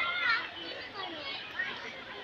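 Children's voices chattering, high-pitched and overlapping.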